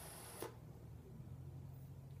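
Faint hiss of an e-cigarette atomizer's dragon nano coil firing during a drag on a nearly dry wick. It stops with a short click about half a second in, leaving only a faint low hum.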